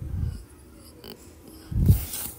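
Two short breath puffs close to a microphone, one at the start and a louder one near the end, with a single click about a second in.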